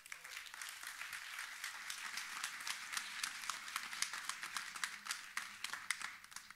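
An audience applauding steadily, welcoming a speaker to the stage; the clapping fades out just after the end.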